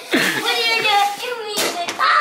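Laughter and excited children's voices, high-pitched and changing quickly, with a brief sharp noise near the end.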